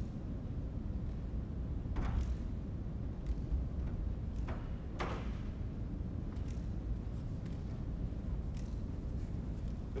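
Hands tapping lacrosse stick shafts back and forth between fingers and palms: a few faint, irregular taps over a steady low room rumble.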